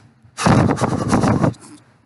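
A man blows a single forceful, roughly one-second breath straight onto the microphone, mimicking an angry breath in the face. It buffets the mic and cuts off sharply.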